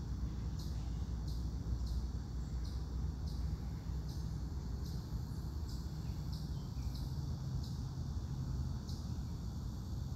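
Insect chirping in a steady, even series of short high chirps, about one and a half a second, over a low steady rumble.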